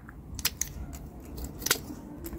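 Secateurs snipping through the bare woody stems of a hardy fuchsia: a few short, sharp snips, the loudest near the end.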